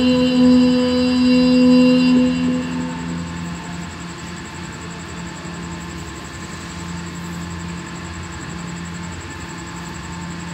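A young qari's voice through a microphone and PA, holding the long drawn-out final note of the ta'awwudh in Quranic recitation and fading out about three seconds in. A pause follows, filled with a steady low hum.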